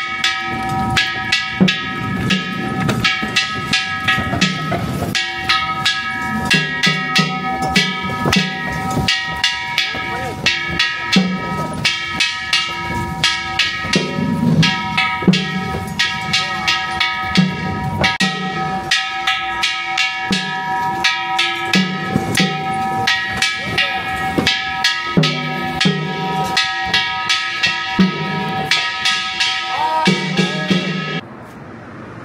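Danjiri festival music of drum and metal percussion: quick, steady strikes with a ringing metallic sound and a deeper drum beat about once a second, going on without a break.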